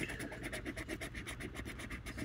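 A coin scratching the coating off a Power 25X scratch-off lottery ticket in rapid, short back-and-forth strokes.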